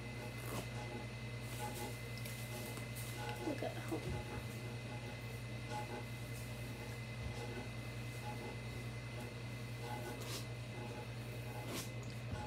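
A steady low hum with a thin high tone under it, and soft rustling and a few light clicks as long hair is brushed and handled.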